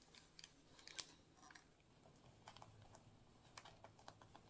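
Faint, irregular clicks and light rustling from a metal belt buckle and chain being handled against a wool poncho, the sharpest click about a second in.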